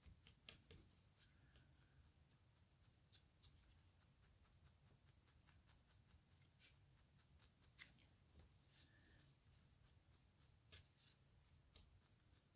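Near silence: faint room hum with a few soft, irregular ticks from a felting needle jabbing wool over a foam pad.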